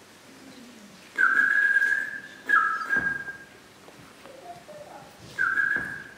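Three whistled notes: each steps quickly up and is then held at one steady high pitch, the first for about a second, the next two shorter, with a longer gap before the last.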